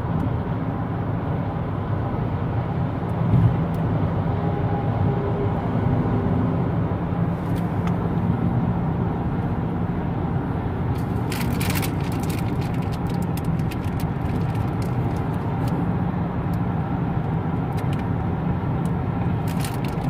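Steady road and engine noise of a car cruising at freeway speed, heard from inside the cabin, with a low rumble. A brief cluster of clicks about halfway through.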